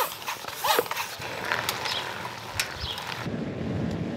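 Floor pump being worked to put air into a mountain bike's punctured rear tyre: a run of uneven clicks and knocks from the pump strokes. Near the end it gives way to the steady rolling noise of a bicycle on the road.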